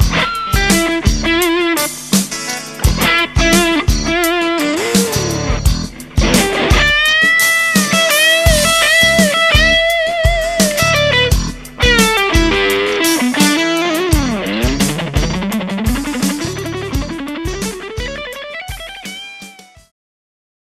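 G&L ASAT Classic Telecaster-style electric guitar played through a Fender combo amp in an improvised lead. The lines carry string bends and vibrato, and the playing fades out near the end.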